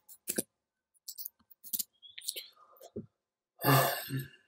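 A few sharp, isolated clicks from a computer keyboard and mouse. Near the end comes a loud, breathy hum from the narrator close to the microphone.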